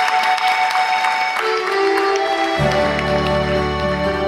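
Instrumental intro of a Schlager song: held sustained chords that move to new notes, with a deep bass line and beat coming in about two and a half seconds in.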